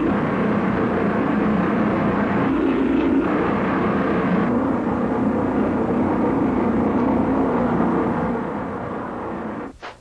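Steam locomotive and its train running, a steady dense rumble of train noise that fades away shortly before the end.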